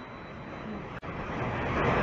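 Steady rushing background noise with no distinct events. It cuts out for an instant about a second in, then comes back louder.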